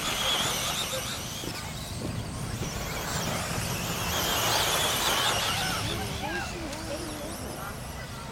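Electric 1/10-scale 2WD off-road RC buggies racing: a high motor whine that swells as cars pass, loudest about halfway through, with voices underneath.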